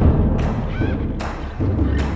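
Battle-scene soundtrack: a run of heavy, evenly spaced thuds and drum hits, about two a second, with a short wavering high cry a little under a second in.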